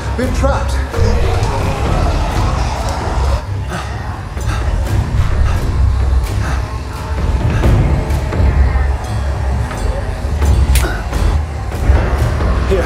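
Film score with a heavy, sustained low bass running throughout, over which non-verbal vocal sounds and scattered sharp clicks are heard.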